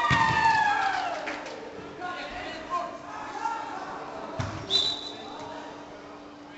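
Indoor five-a-side football: a player's long shout falling in pitch at the start, then a ball being kicked with a dull thud about four and a half seconds in, followed at once by a short, high, steady whistle-like tone, over a faint steady hum.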